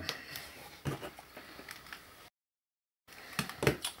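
A few light knocks and handling noises as a die-cast metal electronics unit is set down on a table, with a short stretch of dead silence a little past the middle.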